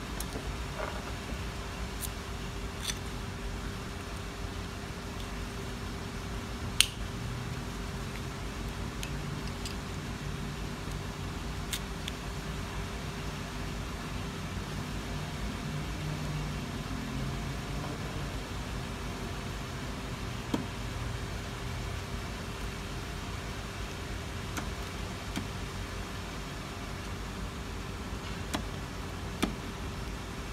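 Scattered short, sharp clicks and snaps of the door handle's trim pieces being fitted by hand, the loudest about seven seconds in, over a steady low hum.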